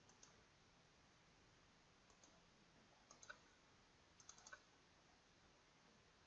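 Faint computer mouse clicks over near silence: a few single clicks, then quick clusters of clicks about three seconds in and again just past four seconds.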